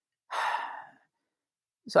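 A person's audible breath, a single short sigh of about half a second, in a pause between words; the word "so" starts just at the end.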